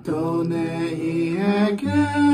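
A man singing a long held note over an acoustic guitar, moving to a new note near the end.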